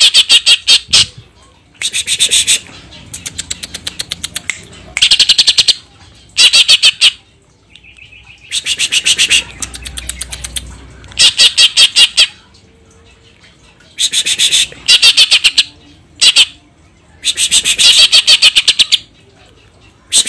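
Caged greater green leafbird (cucak ijo) singing loud bursts of rapid, sharp repeated notes, a dozen or so short bursts with brief pauses between them.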